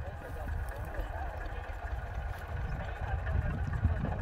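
IMT 539 tractor's three-cylinder diesel engine running while pulling a plough through the soil, heard from some way off as a steady low rumble.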